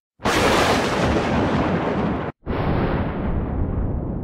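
Explosion-like sound effect for an animated logo intro. A sudden noisy burst holds for about two seconds and cuts off abruptly, then a second burst starts at once and slowly fades away.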